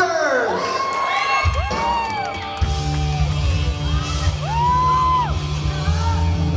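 Live rock band starting to play, with a sustained low chord coming in about a second and a half in and filling out soon after, while the audience whoops and yells.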